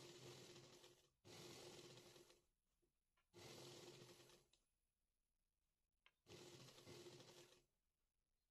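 Near silence: room tone, with four faint, brief stretches of low noise.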